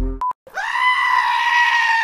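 A short beep, then a goat's single long bleat that holds its pitch and drops away at the end.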